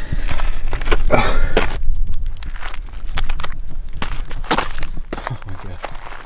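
Footsteps and hand-holds scrabbling on crumbly rock during a steep climb, with hard breathing, over wind rumbling on the microphone. The scuffs come as many short scrapes and knocks and grow quieter near the end.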